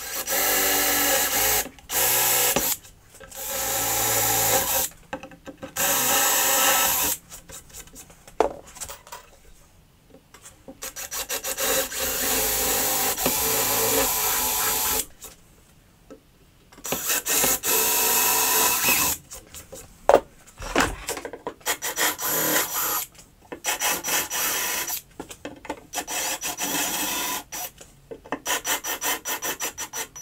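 Metabo cordless drill drilling holes in a crosscut sled, running in bursts of one to four seconds with pauses between them, then in short stop-start bursts in the last third.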